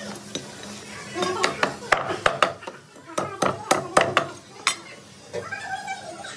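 Heavy butcher's cleaver chopping through a goat leg, meat and bone, on a wooden log chopping block: about a dozen sharp chops in two quick runs, each with a dull thud from the block.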